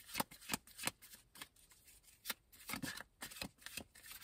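Tarot cards being shuffled by hand: a run of quick, irregular card-on-card clicks and flicks, thinning out briefly around the middle.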